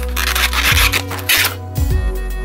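Cardboard box rubbing and scraping as a plastic clamshell tray holding a die-cast model airplane is slid out of it, in two loud strokes, over background music.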